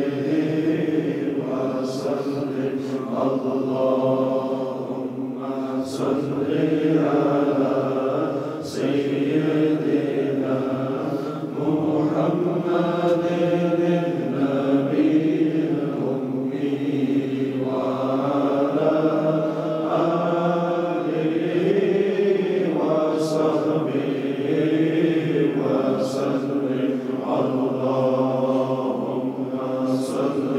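Slow, melodic devotional chanting: voices holding long notes that rise and fall without pause.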